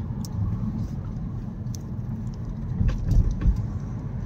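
Car engine and tyre noise heard from inside the cabin: a steady low rumble that swells a little about three seconds in as the car drives off.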